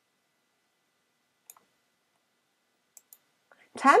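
A few faint, short clicks against near silence, one about a second and a half in and two close together about three seconds in, followed by a woman's voice starting near the end.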